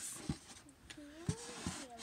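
A few soft clicks and knocks from handling a styrofoam egg incubator, with a faint voice sounding a note that rises and falls in the second half.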